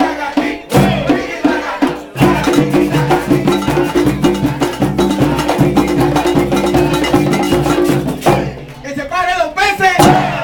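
Live band of panderos (hand-held frame drums) playing a fast, dense rhythm with pitched voices or instruments over it. The music breaks off briefly about two seconds in, then stops abruptly about eight seconds in, and voices shout after the stop.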